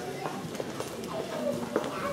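Indistinct chatter in a hall, with scattered footsteps and small knocks of shoes on a wooden floor as people walk about.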